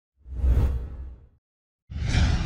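Whoosh sound effect for an animated logo: a swish with a deep low end that swells and fades over about a second, then a second swell begins right at the end.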